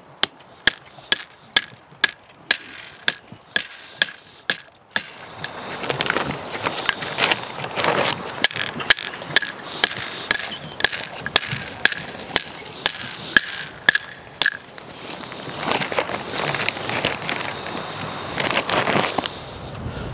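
Steel T-post being driven into the ground with a post driver: a fast run of metal-on-metal clanks, about two a second, each with a short ringing tone, stopping about fifteen seconds in. After that comes a rushing noise for several seconds.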